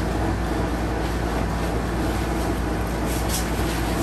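Steady low hum and hiss of room noise, unchanging throughout, with no speech.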